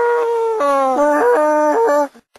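A man's voice holding long, howl-like sung notes that jump in pitch, breaking into several shorter notes in the second half before cutting off.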